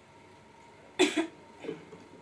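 A woman coughing: two quick coughs about a second in, then a softer one.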